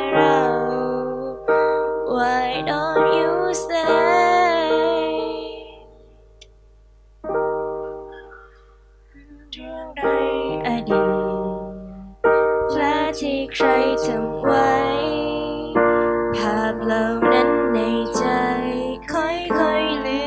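A female vocalist sings a slow ballad through a microphone, accompanied by a digital piano. About six seconds in, the music drops almost to silence for a few seconds, broken by a single soft piano chord, before voice and piano come back in.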